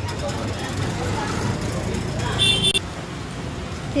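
Street traffic noise, a steady low hum, with a short high-pitched horn toot a little past halfway.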